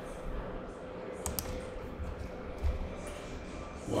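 Quiet room tone with a couple of sharp faint clicks a little over a second in, and a few soft low bumps after.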